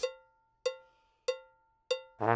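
Electronic metronome counting in: four evenly spaced, short pitched clicks, about one and a half a second, each dying away quickly.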